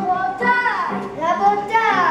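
A song with children's singing plays, the voice sliding down in pitch near the end.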